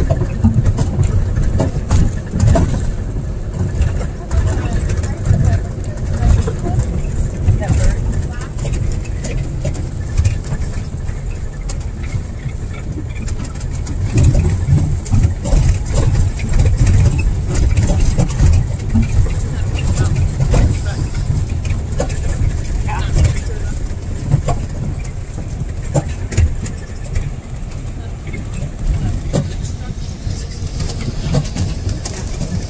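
Vehicle driving over rough ground: a steady low engine and road rumble with frequent small knocks and rattles from the bodywork.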